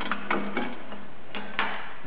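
A few light metallic clunks and clicks as the cast housing of a Bridgeport 2J variable-speed drive is handled and shifted on a metal workbench, over a steady low hum.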